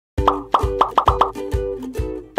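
A quick run of about eight cartoon 'pop' sound effects, several a second, each a short upward-sweeping plop, over light background music.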